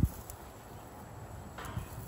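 Metal tongs knocking and scraping on the grate of a gas grill as hot dogs are turned over: a sharp clack right at the start and a short scrape near the end, over a faint steady background.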